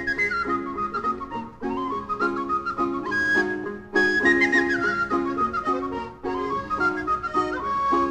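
Instrumental passage of an Irish folk song: a high, ornamented whistle-like melody played in phrases over a rhythmic chordal accompaniment.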